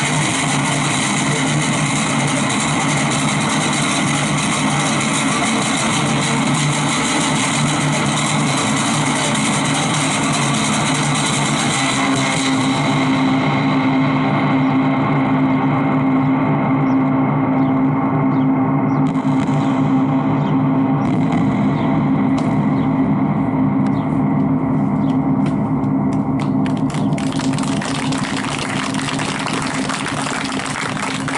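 Electro-acoustic guitar played through effects: sustained, gong-like ringing drones built of layered tones that hold steady. About twelve seconds in the treble thins and a low drone dominates; a bright hissing wash fills the top again near the end.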